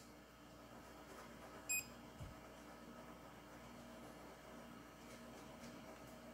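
A single short, high beep from the Creality CR6-SE printer's touchscreen as a menu button is tapped, just under two seconds in, over a faint steady hum.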